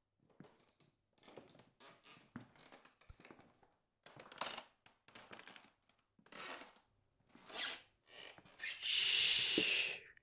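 Footsteps sound effect: a run of crunchy, scuffing steps that grow louder. Near the end comes a longer, louder scrape lasting about a second and a half.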